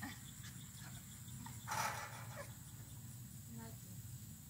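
Insects chirring steadily, with one short, breathy noisy burst about two seconds in that is the loudest sound.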